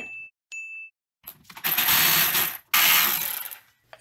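A cordless power ratchet runs in two bursts of about a second each, spinning out the two 14 mm brake caliper bolts. Two short electronic dings come just before.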